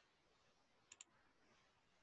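Near silence, broken by two faint sharp clicks in quick succession about a second in.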